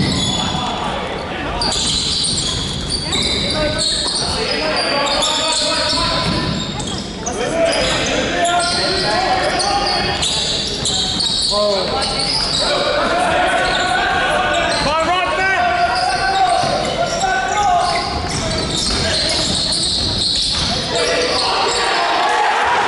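A basketball bouncing on a wooden court in a large, echoing sports hall, with players' and onlookers' voices calling throughout.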